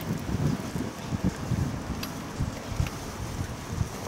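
Wind buffeting an outdoor microphone: uneven low rumbling gusts, with a couple of faint ticks about two and three seconds in.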